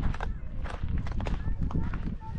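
Footsteps on a wooden plank boardwalk: a series of irregular hollow knocks as someone walks up to a building. Faint voices are heard behind them.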